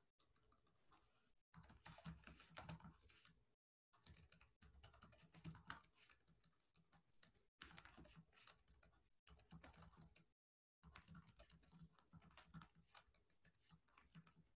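Faint typing on a computer keyboard: runs of quick key clicks broken by short pauses.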